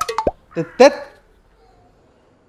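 A voice giving a few short, broken syllables in the first second, halting like a stammer, then dying away to a faint trace.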